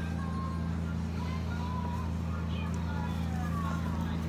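Steady low hum, like household machinery running in a room, with a few faint brief tones over it.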